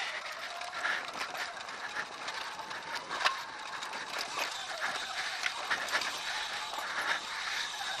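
Sur-Ron Light Bee electric dirt bike rolling down a rocky dirt trail: tyres crunching over gravel and stones, with the chain and bike rattling and clicking over the bumps, and a faint steady high whine underneath.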